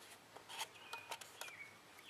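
Faint light clicks and taps from a small metal heat can and its wire cage being turned over in the hands, with two brief faint high chirps about halfway through.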